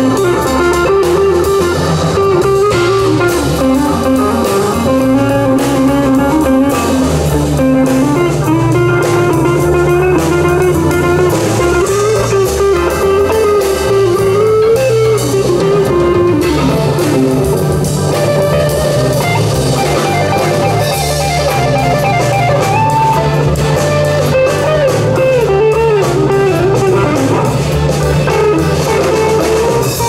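Jazz fusion played live: a hollow-body electric guitar plays a winding single-note melody over low bass notes and a drum kit.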